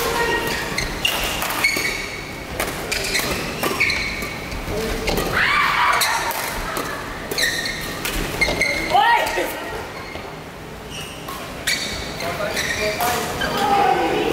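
Badminton rally in a large indoor hall: repeated sharp cracks of rackets striking the shuttlecock, mixed with short squeaks of court shoes on the floor, with echo from the hall.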